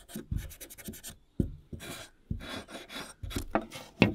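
Hard rubber scouring pad rubbed in quick scratchy strokes over the oiled steel blade of a pair of secateurs, scrubbing off resin and dirt, with a few low knocks among the strokes.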